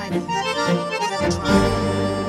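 Two accordions playing a tango duet, with short chords and melody notes that change several times a second.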